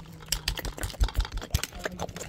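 Hard plastic action figures knocking and clattering together in quick, irregular clicks and taps as they are made to fight.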